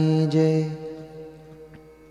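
A man's voice chanting a mantra, holding one long steady note that breaks off under a second in and then fades away.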